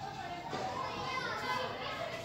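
Faint voices in the background during a pause, with no loud event.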